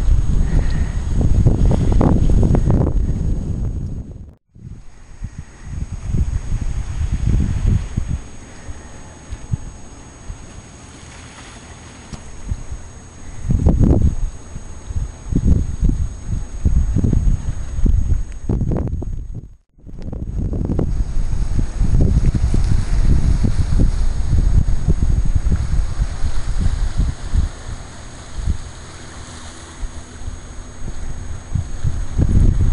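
Wind buffeting the microphone in irregular gusts, strongest at the low end, with two brief breaks where the sound cuts out.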